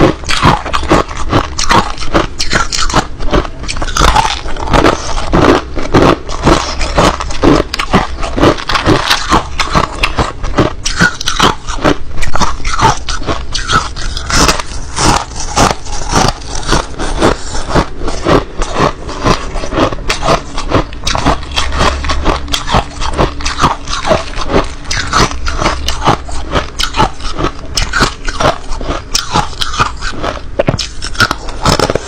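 Close-miked crunching of crushed ice being bitten and chewed: a fast, unbroken run of sharp, crackling crunches.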